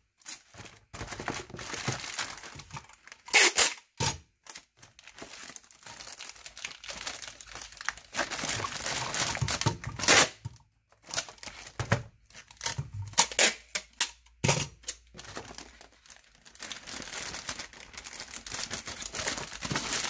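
A plastic poly mailer bag crinkling as it is handled, with packing tape pulled off the roll and torn several times to tape the bag's adhesive flap and corners shut.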